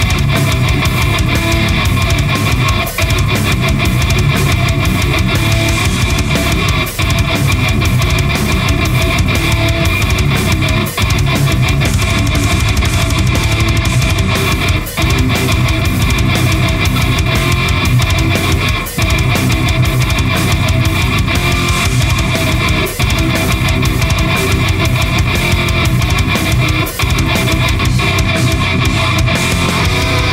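Heavy metal music with distorted electric guitar riffing over a full band, with a brief break about every four seconds.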